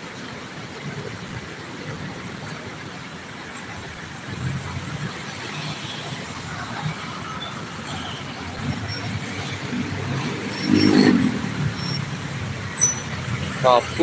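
Road traffic on a busy, jammed city street: a steady wash of engine and tyre noise, with one louder vehicle engine sound swelling briefly about eleven seconds in.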